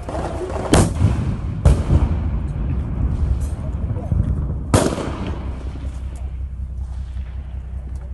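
Three loud gunshots in a firefight, the first two about a second apart and the third some three seconds later, each with a short echo, over a constant low rumble.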